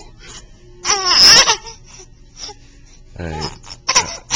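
A baby laughing and squealing in a short burst about a second in, with another shorter laugh a little after three seconds.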